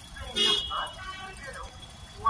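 A brief vehicle horn toot about half a second in, with people's voices and road traffic around it.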